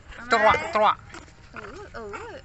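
A woman's voice calling out in high, sing-song Vietnamese baby talk, loudest in a short burst about half a second in, followed by softer rising-and-falling calls.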